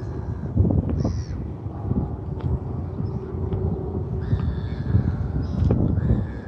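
Seabirds calling: a short call about a second in and longer, drawn-out calls near the end, over a steady low rumble.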